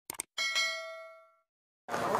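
Subscribe-animation sound effects: two quick mouse clicks, then a bell-like notification chime that rings out and fades over about a second.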